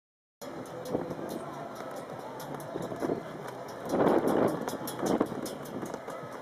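Outdoor ambience with a motor vehicle passing, loudest about four seconds in, with another brief peak a second later. It starts after a short gap of silence.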